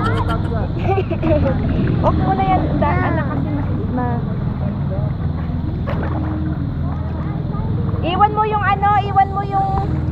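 High children's voices chattering and calling over a steady low rush of wind and water, with one child's voice holding a long, high, wavering note near the end.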